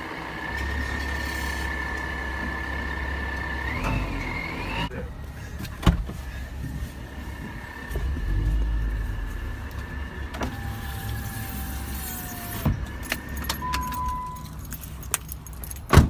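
Truck engine running with a low, steady rumble, briefly louder about eight seconds in as the truck eases into position, with a faint steady high whine above it. A few sharp clicks and knocks come through in the second half.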